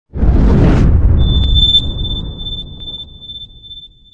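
Logo intro sound effect: a deep boom with a brief whoosh at the start that dies away slowly over about three seconds, joined about a second in by a thin, steady high ringing tone.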